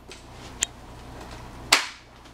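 Stokke Xplory stroller frame clicking as its folding mechanism is released by the buttons under the handle and the foot part: a light sharp click about half a second in, then a louder click near the end.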